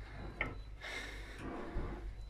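Quiet pause: a steady low hum with faint rustling and one small click about half a second in.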